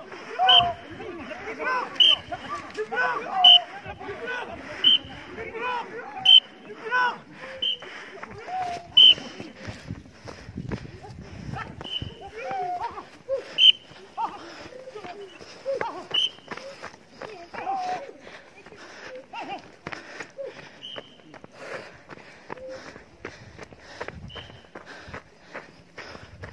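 A crowd shouting and calling out over one another, with short sharp high cries about once a second in the first half that thin out and grow quieter later.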